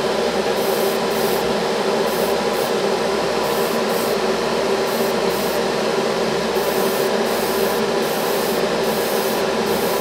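Airbrush spraying paint in short, repeated bursts of hiss, most of them under half a second, over a steady motor hum.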